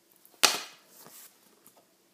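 Stiff paper envelope and card being handled: one sharp snap about half a second in, then faint paper rustling.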